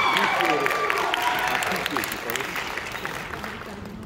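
Audience applauding and cheering with scattered shouts, the clapping dying away over the few seconds.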